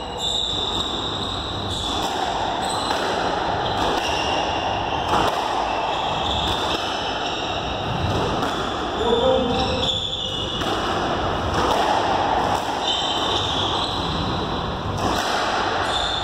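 A squash rally: the rubber ball is struck by rackets and smacks off the court walls every second or two, over a steady background noise.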